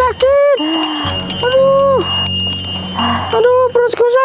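Two drawn-out "aah" cries, held at a steady pitch for about half a second each, the first right at the start and the second about one and a half seconds in, over a jingling, bell-like music bed.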